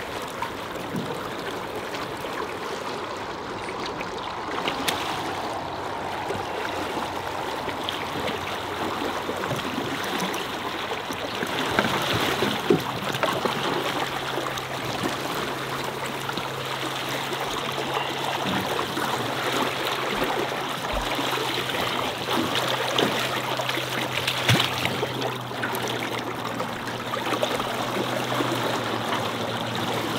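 River current rushing and splashing along the side of a boat, with a few sharper splashes as a hooked steelhead thrashes at the surface alongside. A low steady hum comes in about halfway through.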